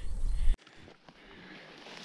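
Loud low rumbling noise on the microphone that cuts off abruptly about half a second in, followed by a faint, steady outdoor background hiss.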